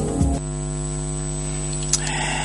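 The tail of a TV station ident's music cuts off about half a second in, leaving a steady electrical mains hum: an even, buzzy drone of several stacked tones on the broadcast audio.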